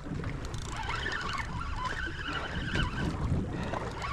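Wind rumbling on the microphone over choppy sea water washing against a fishing boat's hull: a steady, moderate noise.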